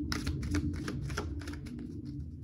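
A stack of handwritten index cards being shuffled by hand: a quick run of light papery clicks and flicks that thins out toward the end.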